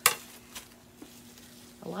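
Corelle-style plates clinking sharply together once as they are handled or set down, followed by two faint lighter clicks.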